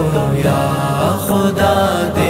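Male voice singing a line of an Urdu naat, a devotional poem, over a steady chanted vocal drone.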